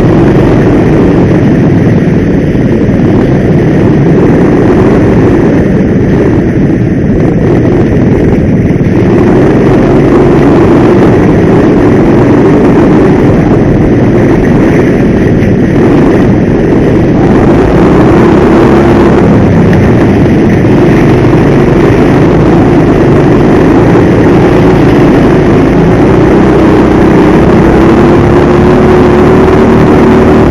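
Go-kart engine heard from a camera mounted on the kart, running loud throughout. Its pitch dips and rises as the kart works through the corners, then climbs steadily near the end under acceleration.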